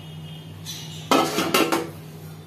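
Metal kitchen utensils clattering and clinking together, loudest for just under a second starting about a second in, with a brief ringing.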